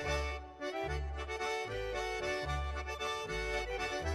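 Background music: an accordion playing a folk-style tune with sustained chords over a steady, alternating bass line.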